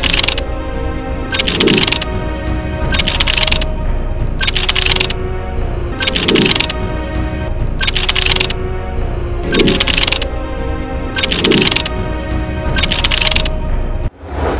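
Production sound effects for an animated title: bright, ringing shimmer hits, about ten of them, one roughly every second and a quarter, with a low falling swoosh under several, over a music bed.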